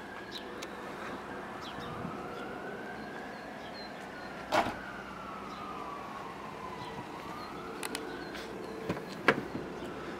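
A siren wailing, its pitch rising and falling slowly about every three to four seconds. A few sharp clicks sound over it, the loudest about halfway through.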